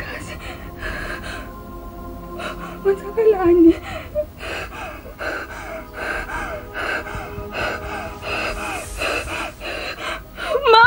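A woman gasping and whimpering in distress, with short, sharp breaths about twice a second and a louder pitched cry about three seconds in, over sustained background music.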